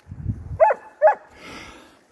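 A dog gives two short, high yaps about half a second apart, barking to have a stick thrown. A low rumble comes just before them.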